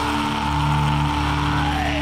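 Death metal playing from a vinyl LP on a turntable: held low chords under a lead line that slides down in pitch, then rises again near the end.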